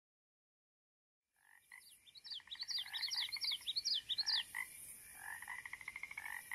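Frogs calling in a chorus, rapid pulsing trills mixed with quick falling chirps repeated several times a second, over a steady high hiss. It starts about a second and a half in after silence.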